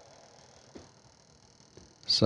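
Near silence: faint room tone, with one small tick about three quarters of a second in.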